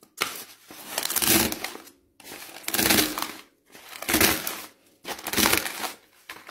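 A dry instant-noodle block cracking and crunching inside a sealed plastic Doshirak tray as a hand presses down on it, with the tray and its lid crinkling. It comes as five crunching presses about a second apart, breaking the noodles up without opening the pack.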